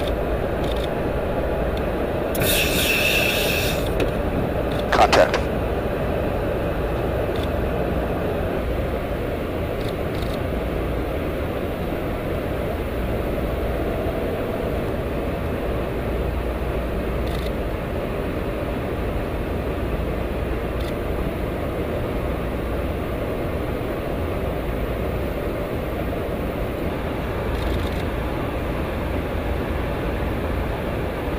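Steady in-flight noise inside an aerial refueling tanker's boom operator station: a constant low rush of engines and airflow. A short burst of hiss comes a few seconds in, and a couple of sharp clicks come about five seconds in.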